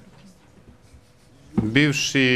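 Speech: a quiet pause with faint background talk, then a man's voice starts loudly into a close microphone about one and a half seconds in.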